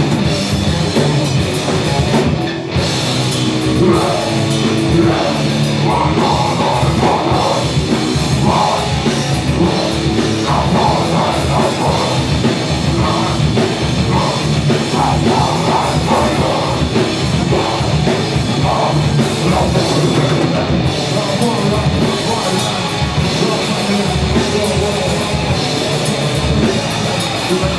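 A rock band playing live at full volume: electric guitars and a drum kit, with a brief break about two and a half seconds in.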